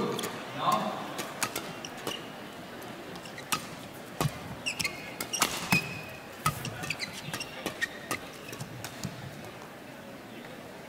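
Badminton rackets striking a shuttlecock back and forth in a warm-up rally: a quick, irregular run of sharp hits, with short squeaks of shoes on the court and indistinct voices echoing in a large hall.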